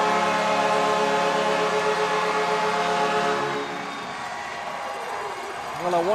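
Ice hockey arena goal horn sounding a steady multi-note chord after the home team's overtime winner. It fades out about three and a half seconds in, leaving crowd noise.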